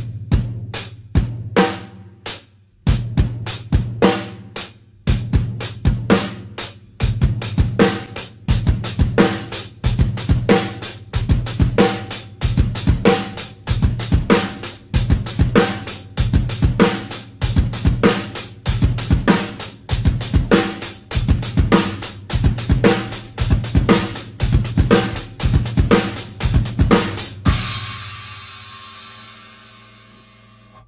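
Acoustic drum kit playing a simple beat of hi-hat and bass drum with the snare on count three, the tempo gradually speeding up from slow to fast. Near the end the beat stops on a cymbal crash that rings and fades.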